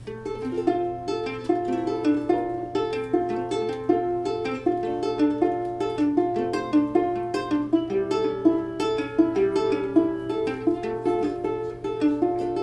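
Ukulele playing the instrumental intro to a song: plucked chords in a steady, even rhythm.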